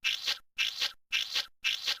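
Felt-tip marker scribbling sound effect: scratchy strokes repeating evenly, about two a second.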